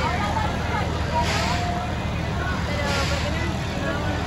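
Fairground ride running, a steady low machine hum under the chatter of a crowd of voices, with a hissing whoosh that swells about every second and a half.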